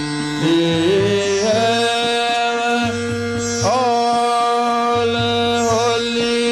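A man singing a slow devotional song in long held notes that slide and bend in pitch, over a steady instrumental accompaniment.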